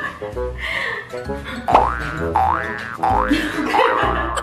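Background music with an edited-in sound effect that dips and slides back up in pitch, four times in the second half.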